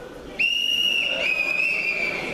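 Referee's whistle blown in a long steady blast starting about half a second in, then a second, slightly lower blast right after it that carries on past the end.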